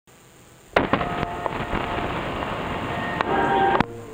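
Television static: a loud hiss full of crackles and clicks that starts abruptly under a second in, with a few faint steady whistling tones through it, and cuts off suddenly just before the end.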